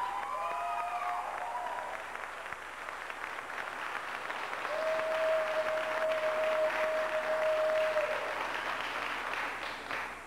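Audience applauding, with a few voices whooping in the first two seconds and one long steady held note over the clapping for about three seconds in the middle.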